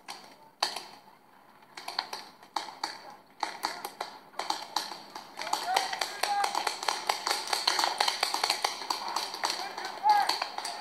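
Paintball markers firing: sharp, irregular pops, a few scattered shots at first, then a dense stream of shots from about halfway through, with several guns going at once. Voices shout over the shots.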